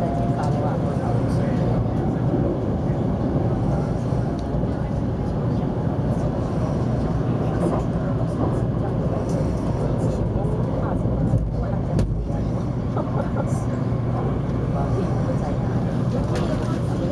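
Steady running rumble of a Taiwan High Speed Rail 700T train at speed, heard inside the passenger cabin, with people's voices in the background.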